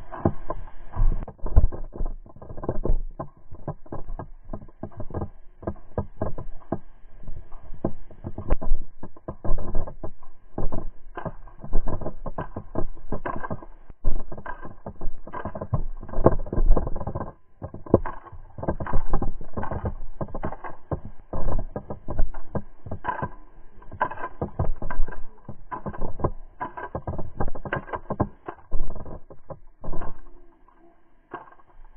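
Footsteps and gear jostling against a body-worn action camera as a player moves quickly across a grass field: a steady run of irregular knocks and thumps, easing briefly a little past halfway.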